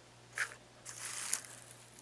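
Handling noise as craft flowers are picked up and swapped: a short rustle about half a second in, then a longer crinkling rustle around a second in.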